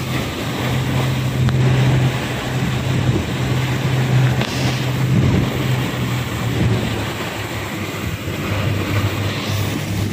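A small boat's engine running with a steady low drone, under heavy wind buffeting on the microphone as the boat moves over open water.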